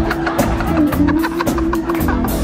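Band music with a steady beat: drum kit hits about every quarter second over a sustained low bass note.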